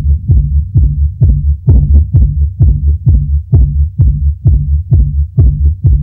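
Electronic dance music from a club DJ set, stripped down to a steady kick drum and bass line at just over two beats a second with no high end. Bright hi-hats come back in right at the end.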